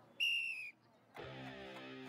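A short whistle blast: one high, steady tone lasting about half a second that dips slightly as it ends. A little over a second in, background music starts with sustained held notes.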